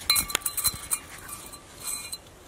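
A few light metallic clinks about half a second in, each leaving a faint ringing, from a new front brake rotor and its bearing parts being handled in their box.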